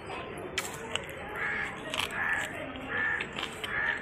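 A crow cawing four times, evenly spaced under a second apart, over a few sharp clicks from chewing.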